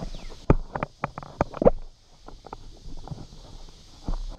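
Irregular knocks, taps and rubbing from the camera being handled, the loudest about half a second in and again about a second and a half in.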